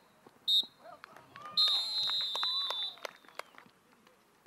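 Referee's whistle: a short blast about half a second in, then a long held blast lasting over a second, the short-short-long pattern that signals full time.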